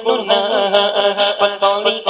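Male voice singing a naat, an Islamic devotional song, in a chanted melody of short, evenly paced notes.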